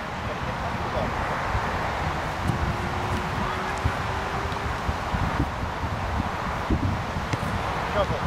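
Wind buffeting the camera microphone outdoors: a steady low rumble and flutter. A faint thin hum runs through the middle.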